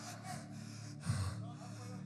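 A man breathing into a handheld microphone in a pause between shouted phrases, with a short sharp intake about a second in. A faint steady low hum sits underneath.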